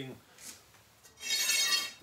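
A steel bar clinking and ringing as it is picked up, a short bright metallic ring a little over a second in.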